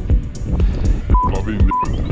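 Two short, steady single-pitch censor bleeps, about a second in and again half a second later, covering two swear words, over background music with a steady beat.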